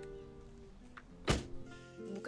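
A car door, the black Range Rover's, shutting with a single thunk about a second and a half in. Soft background music plays underneath.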